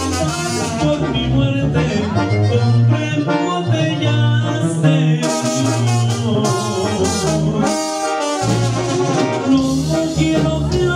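A live Latin dance band playing through the club's sound system, with horns carrying the melody over a steady bass line.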